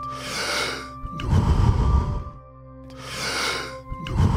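A person doing deep power breathing in the Wim Hof style: three long, forceful breaths through the mouth with a short pause before the last, over steady background music.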